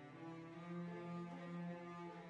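String orchestra playing slow, sustained bowed chords, with a low note held for about a second in the middle.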